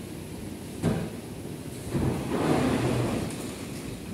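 Escalator running with a steady mechanical rumble. There is a short knock about a second in, and a louder rumbling stretch from about two to three seconds.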